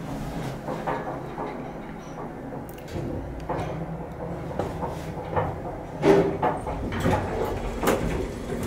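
Antique Otis traction elevator car in motion: a low steady hum with scattered clicks and rattles from the cab and its door. Louder knocking and clatter come about six seconds in.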